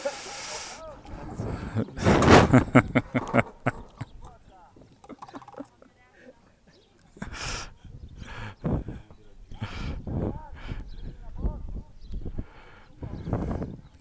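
Indistinct voices around an outdoor football pitch, with calls and chatter at a distance, and a few louder, noisy bursts in between.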